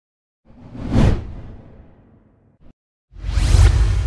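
Two whoosh sound effects in an animated logo intro. The first swells to a peak about a second in and fades away; the second starts about three seconds in, with a deep rumble underneath.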